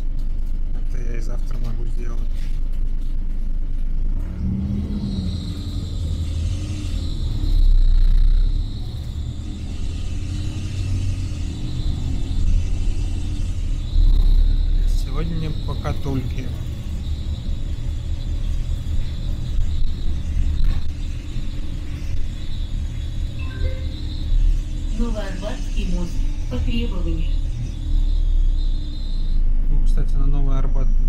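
Inside a LiAZ-4292.60 city bus under way: low diesel engine and road rumble, swelling about 8 and 14 seconds in. A steady high whine runs through most of it, with a few faint voices.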